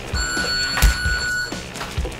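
Round timer's start beep: one long electronic beep, a steady high tone lasting about a second and a half. A sharp thud from a boxing-glove strike lands partway through it.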